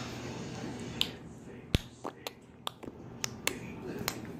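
A finger picking at the lower front teeth and lips makes a string of about eight sharp, irregular clicks and taps, starting about a second in; the loudest comes a little before the middle.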